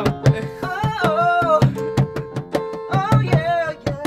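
A man singing an improvised song in long, wavering phrases while playing chords on an electronic keyboard, over a quick, steady drum beat.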